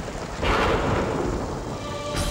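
Heavy rain with a rumble of thunder swelling up about half a second in, part of the drama's rainstorm soundtrack.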